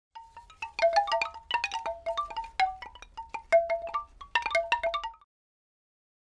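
Opening logo jingle of many quick, bright chime notes ringing at a few set pitches over a low hum, cutting off suddenly just after five seconds in.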